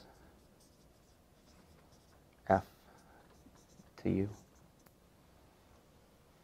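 Dry-erase marker writing on a whiteboard, faint strokes and scratches. A man's voice speaks two short words, about two and a half and four seconds in.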